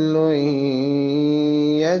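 Male voice in melodic Quran recitation (tajweed), holding one long steady note with a slight dip in pitch, which breaks off near the end into the next words.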